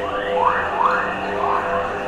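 Electronic opening soundscape played through a theatre PA and recorded from the audience: a steady low drone of held tones, with about four quick rising swoops in the first second and a half.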